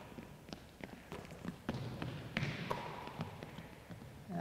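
Scattered faint thuds and taps of a basketball being passed and caught, and players' footsteps on a hardwood gym floor, ringing in a large hall.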